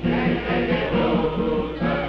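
A group of people singing a song together, a melody of held notes moving from pitch to pitch.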